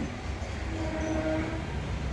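A steady horn-like tone is held for about a second in the middle, over a low rumble.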